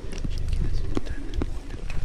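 Close-miked ASMR sounds: quiet, unintelligible whispering mixed with many small sharp clicks and taps over a low rumble.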